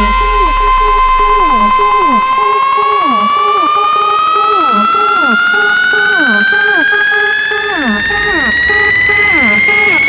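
Scouse house (bouncy) dance track in a build-up: the bass drum fades out about a second and a half in, and a sustained synth lead rises slowly and steadily in pitch over short falling synth notes repeating about twice a second.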